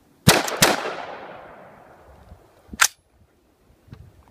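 LWRC M6A2 gas-piston rifle firing two shots in quick succession about a quarter second in, echoing away over a couple of seconds, then one shorter sharp crack near three seconds. The shooters say the rifle went all by itself and is hiccuping, and they take the trouble for a gas issue.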